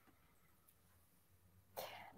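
Near silence between two speakers, with one brief faint sound near the end.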